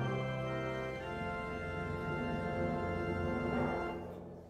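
Organ playing held chords, the chord changing about a second in, as a piece draws to its close; the sound starts to die away near the end.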